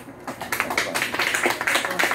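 A small audience applauding: a round of dense, irregular clapping that starts about a third of a second in.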